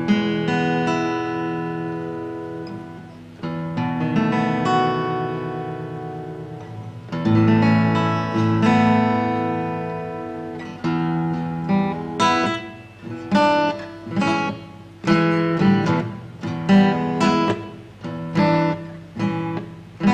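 Morris MD-507 dreadnought acoustic guitar being strummed: a few slow chords are left ringing out, then from about halfway through it moves to a quicker rhythmic pattern of short strummed chords.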